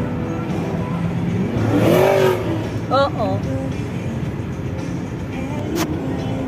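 A car driving, its engine and road noise rising and falling in pitch about two seconds in, under background music. A brief voice comes about three seconds in, and a sharp click near the end.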